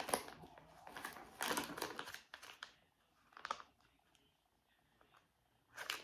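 Soft crinkling of a clear plastic bag being handled, in a few short rustles: about a second and a half in, again around three and a half seconds, and near the end.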